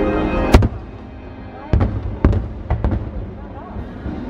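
Aerial fireworks shells bursting. There is one loud bang about half a second in, then a quicker run of about five bangs between roughly two and three seconds.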